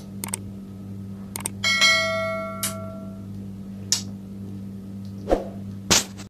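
Subscribe-button animation sound effects: a few sharp mouse-click sounds and one bell-like notification chime that rings out and fades over about a second and a half, starting a little under two seconds in. A steady low hum runs underneath.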